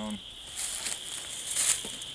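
Soft, uneven rustling and crinkling as a person stoops and handles things over dry leaf litter, growing a little louder near the end.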